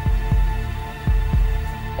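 Heartbeat-like tension music: a double low thump about once a second over a steady held drone.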